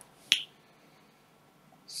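A single short, sharp click about a third of a second in.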